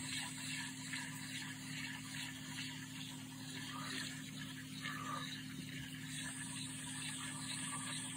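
Daiwa 24 Luvias LT3000-H spinning reel being cranked by hand, its rotor turning with a faint, even whir and fine ticking, over a steady low hum.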